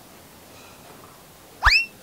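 A comic sound effect: one quick whistle-like glide that sweeps sharply upward in pitch over about a quarter second, near the end, over faint room tone.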